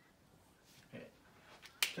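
Quiet room with one sharp, short click near the end, just before the voice resumes, and a faint brief low sound about a second in.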